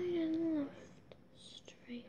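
A girl singing unaccompanied holds one note, which ends a little over half a second in, followed by faint breathy noises.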